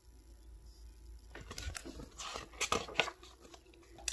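Pages of a thin paperback picture book being handled and turned: a string of soft paper rustles and small clicks beginning about a second and a half in.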